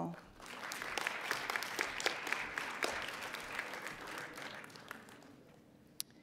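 Audience applauding, a dense spread of claps that starts just after the start and fades out over the last second or so.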